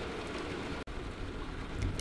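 Steady rain in the background, an even hiss with no distinct events.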